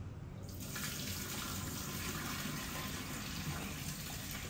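Kitchen tap running into a metal cooking pot held at the sink, starting about half a second in, as the dal in it is rinsed.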